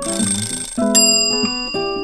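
Acoustic guitar background music, with a short rushing noise at the start and then a bright bell-like chime about a second in that rings on: a quiz 'time's up' sound effect.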